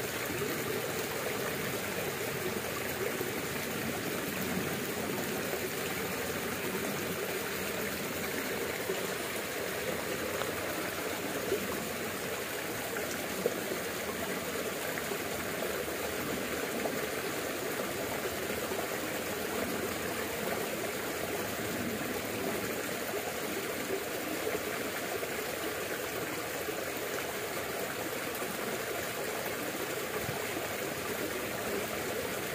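Muddy creek water running steadily past a line of sandbags, an even, unbroken rush.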